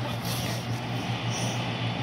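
Steady hum and rush of air from a running electric fan.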